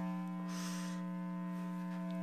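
A steady held musical tone, its pitch and level unchanging, from the jam session's amplified instruments, with a short breath about half a second in.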